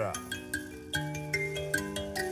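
Mbira being played: its metal tines plucked by thumb in a slow, gentle run of notes, about three or four a second, each ringing on and overlapping the next.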